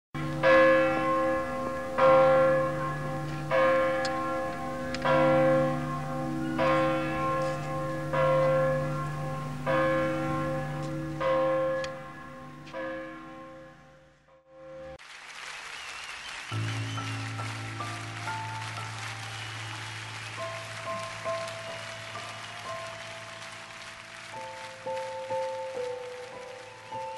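A single church bell tolling slowly as a mourning knell, about nine strokes roughly one every second and a half, each ringing on. It fades out about fourteen seconds in, and slow music of long held notes over a low drone follows.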